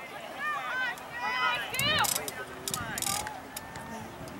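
Indistinct voices of players and spectators calling out across a soccer field in short, high-pitched shouts, with a few brief clicks in the second half.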